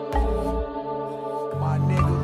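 Instrumental hip-hop beat: sustained synth chords over a deep bass hit just after the start, with the bass line moving to a new note about one and a half seconds in.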